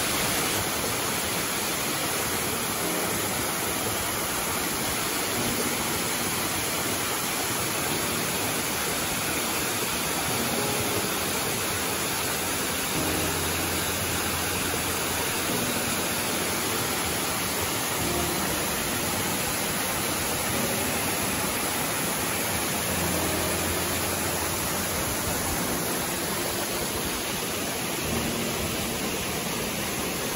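Waterfall cascading down a rock face: a steady, even rush of falling and splashing water.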